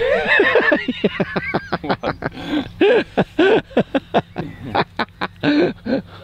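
Several men laughing, in rapid short bursts.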